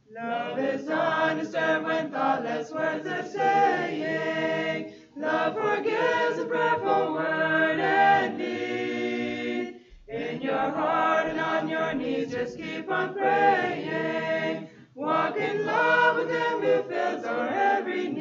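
Mixed choir of women and men singing a cappella, in phrases with short breaks between them about every five seconds.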